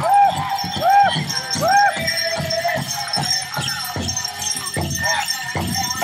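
Powwow drum group singing a grand entry song: a steady, loud drumbeat under high voices that rise and fall in repeated arching phrases. Bells and jingles on the dancers' regalia shake along with it.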